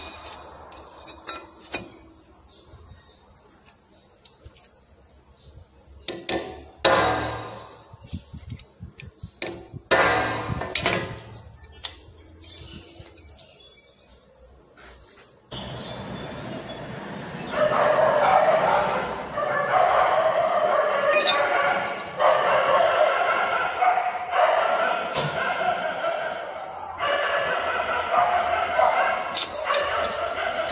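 A few sharp metallic knocks and clinks as cut stainless steel plates are handled. Then, a little past halfway, the level steps up and louder music comes in and carries on to the end.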